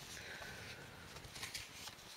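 Faint rustle of a paper card-album page being turned and handled, with a couple of light ticks about one and a half seconds in.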